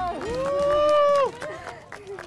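A person's voice letting out one long held cheer or whoop, about a second long, rising into it and dropping off at the end, with laughter around it.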